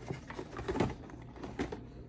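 A large cardboard model-kit box being handled and turned around, with a few soft knocks and scrapes of the cardboard.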